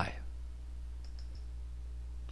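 Low steady background hum in a pause of narration, with a few faint, short clicks about a second in.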